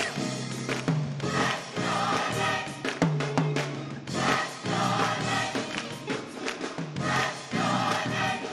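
A large gospel choir singing a song live, with sustained low notes under the voices throughout.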